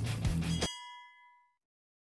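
Rock intro music with guitar cuts off abruptly less than a second in, leaving a bright bell-like ding from a subscribe-button notification-bell sound effect that rings out and fades within about a second.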